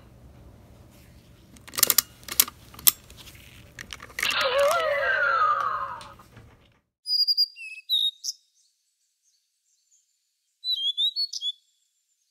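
Sharp plastic clicks from a Yo-kai Watch Type Zero toy as its medal is taken out, then the toy's speaker plays a descending, warbling electronic sound effect that cuts off. After a stretch of dead silence come two groups of short, high bird chirps.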